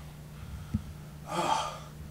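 A man's gasping breath about halfway through, a short breathy rush of air, after a brief soft knock. A steady low hum runs underneath.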